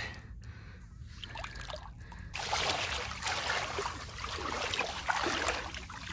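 Shallow water splashing and fizzing around a camera held at or under the surface. It is muffled and quieter at first, then turns into a dense, crackling hiss about two seconds in.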